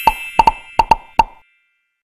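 Cartoon pop sound effects of an animated logo sting: about six quick pops in the first second and a half, over the fading ring of a bright ding.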